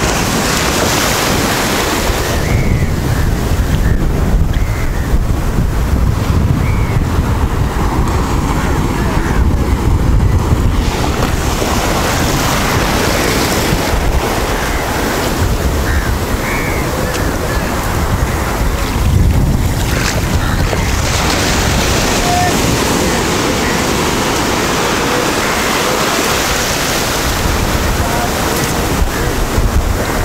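Small waves breaking and surf washing through the shallows, loud and steady, with wind buffeting the microphone.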